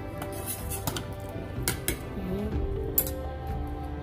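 Metal spoon clinking against the side of a stainless steel pot as a simmering stew is stirred: several sharp clinks, the loudest about three seconds in. Background music plays throughout.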